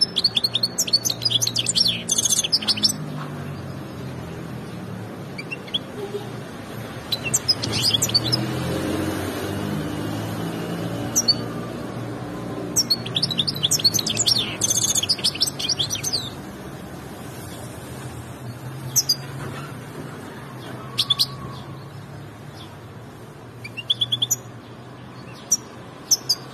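A small caged songbird singing in bursts of rapid, high chirping trills, each phrase lasting a second to a few seconds. The longest phrases come at the start and around the middle, with shorter chirps later, over a steady low rumble.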